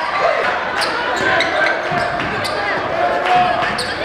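A basketball dribbled on a gym floor, repeated bounces echoing in a large hall over the chatter of crowd voices.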